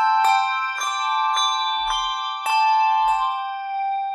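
A handbell ensemble playing a slow tune: about six notes are struck, roughly two a second, each ringing on and overlapping the next.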